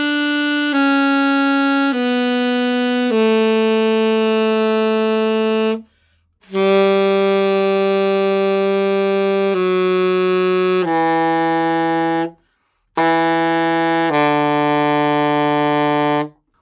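Glory alto saxophone playing a B scale slowly in long held notes, stepping down in pitch into the bottom of the horn, with two short breaks for breath. The lowest notes come from the range that the player finds stuffy on this instrument.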